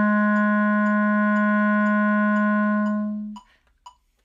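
Clarinet holding the tune's long final low note, a written low B-flat, for about three and a half seconds before it stops. A faint click track ticks about twice a second and is heard alone twice at the end.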